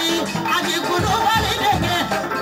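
A Malian griotte singing a wavering, ornamented praise melody through a microphone, over amplified instrumental backing with a steady beat.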